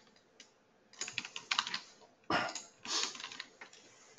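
Computer keyboard being typed on, in several quick runs of keystrokes starting about a second in.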